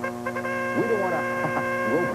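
A steady held electronic tone with several even overtones, coming in about half a second in over a low steady hum.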